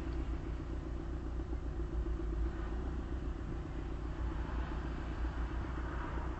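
Car engine idling while the car stands in traffic, a steady low rumble heard from inside the cabin.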